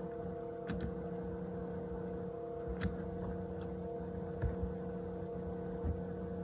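Steady electrical hum made of several constant tones, with a few faint clicks.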